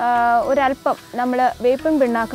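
Speech only: one voice talking.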